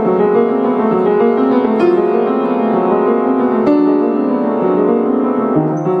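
Piano being played: a slow passage of many held, overlapping notes in the middle register, with firmer chords struck about two seconds and again about three and a half seconds in.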